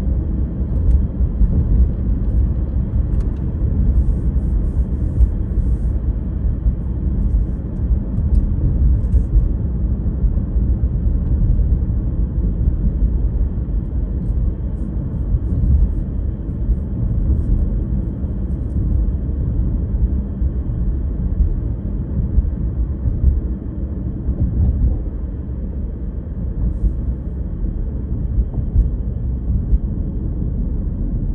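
Steady low rumble of road and tyre noise inside a moving car's cabin while cruising.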